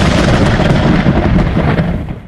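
Loud thunder sound effect: a long, noisy crash of thunder that begins to fade near the end.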